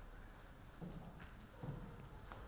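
Footsteps on a hard floor, a few faint knocking steps, the clearest about a second in and near the end.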